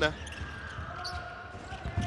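A basketball being dribbled on a hardwood court: a string of low, repeated bounces.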